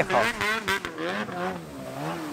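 Ski-Doo Summit 850X snowmobile's two-stroke engine running hard as the sled skims across water, its pitch wavering up and down, then easing off in the second half as the sled reaches shore.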